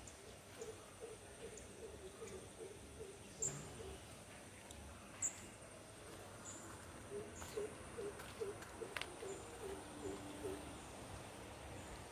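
A bird hooting: a run of quick, low, evenly repeated notes, about three a second, heard twice. The second run ends on a longer, lower note. A few brief, sharp, high sounds stand out, the loudest about three and a half and five seconds in.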